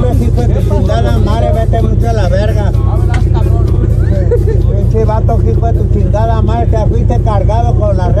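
Polaris RZR side-by-side's engine running with a steady low drone, heard from inside the open cab, with people's voices over it throughout.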